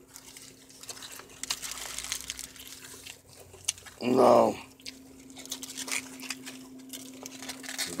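Aluminium foil and paper taco wrappers crinkling and rustling in hand, in small irregular crackles, over a steady low hum. A brief voice sound comes about four seconds in.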